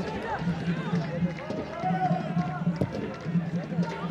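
Football stadium ambience: scattered distant shouts and voices from the stands and pitch over a low, pulsing background hum, with no commentary.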